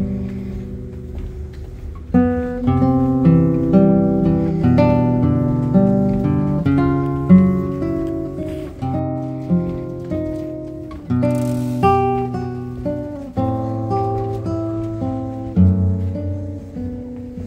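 Background music: a solo acoustic guitar piece, with plucked notes and chords that each strike sharply and ring out, one after another.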